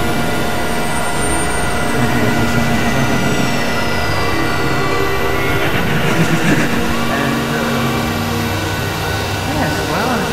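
Experimental electronic noise music: dense synthesizer drones with several steady held tones, and a high whistling tone that slides slowly downward over the first half.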